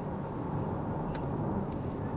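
Steady low road and tyre rumble inside the cabin of a BYD Atto 3 electric crossover driven at about 90 km/h, with no engine note, and one brief click about a second in.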